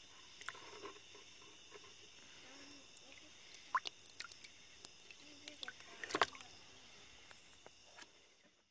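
Water splashing and dripping in a plastic bucket as a yellow perch is handled and lifted out by hand, with a few sharp knocks and taps, the loudest about four and six seconds in. A faint steady high-pitched insect trill runs underneath.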